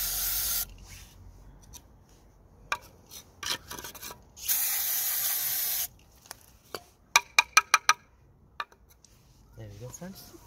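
Aerosol can of EGR and carb cleaner spraying in two bursts of about a second and a half each, the second starting about four and a half seconds in, flushing dirt out of a mass air flow sensor. Scattered small clicks follow, and near the end a quick run of about six sharp clicks.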